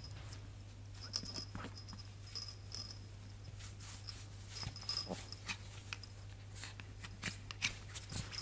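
Yorkshire terrier digging and wriggling in a plush fleece dog bed: irregular rustling and scratching of fabric, over a steady low hum.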